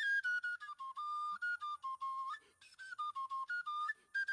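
Background music: a single high, flute-like melody line playing a short stepwise tune of brief notes, with a short pause a little past halfway.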